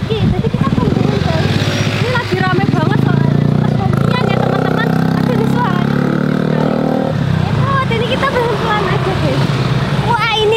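A motorbike engine running close by, rising in pitch over the first two seconds, then holding steady before cutting off about seven seconds in.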